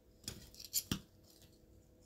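Metal fork and table knife clicking against a plate while picking up bacon: three short, sharp clicks in the first second.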